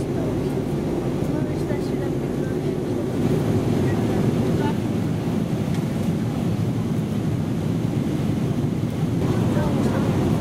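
Steady, loud cabin roar of an airliner in flight: engine and airflow noise heard from inside the passenger cabin, deep and unbroken.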